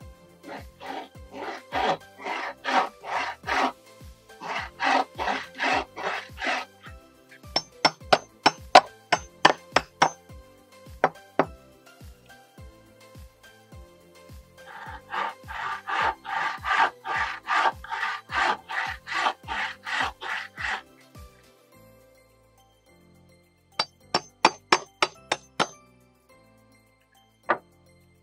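Hand sawing of timber with a bow saw: rhythmic rasping strokes, about three a second, in three bouts while notches are cut in the rail. Between the bouts come runs of sharp knocks, with faint background music underneath.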